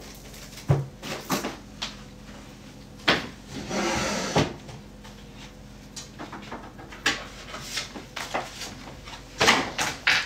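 Handling noise from purses and other things being picked up and moved about while packing: scattered light knocks and clatters, a rustle lasting about a second a few seconds in, and louder knocks near the end.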